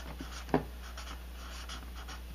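Felt-tip marker writing on paper: faint short scratchy strokes as letters are written, with one sharper tick about half a second in.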